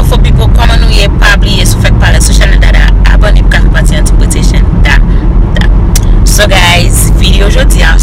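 A woman talking over the steady, loud low rumble of a moving car heard from inside the cabin.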